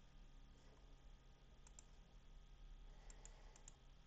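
Faint computer mouse clicks over near-silent room tone: a quick pair about a second and a half in, then four more near the end.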